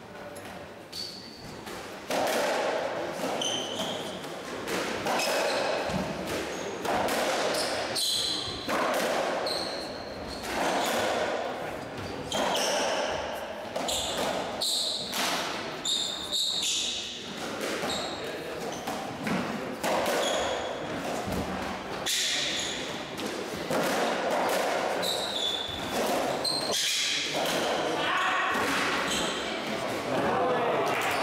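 Racketball rally on a squash court: the ball strikes the strings and walls about once every second or so, each hit echoing around the court. Short high squeaks of shoes on the wooden floor run between the hits.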